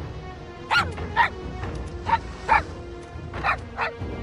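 A small dog barking six times in three quick pairs, with sharp yappy barks, over background music.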